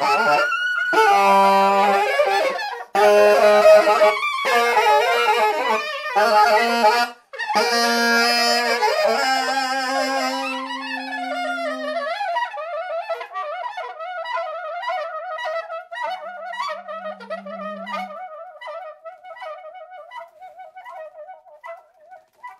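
Soprano and alto saxophones playing in duet. First come about ten seconds of loud, harsh, broken phrases with short gaps and a low held note under them. Then one tone slides down into a quieter single line that wavers around one pitch with rapid small clicks, fading toward the end.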